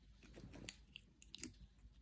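A kitten chewing on a plastic drinking straw: faint, irregular little clicks and crunches.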